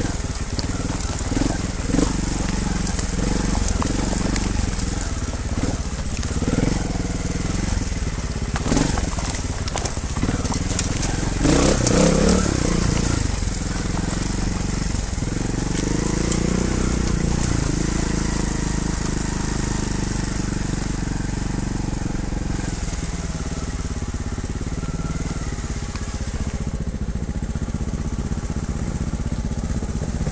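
Trials motorcycle engine running at low revs as it rides down a rocky track, with loose stones crunching and knocking under the tyres. Partway through there is a louder burst of revs and knocks.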